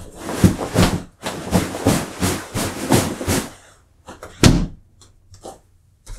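A chair being handled and shifted: a run of rustling and knocking sounds, then one loud thump about four and a half seconds in and a few light clicks.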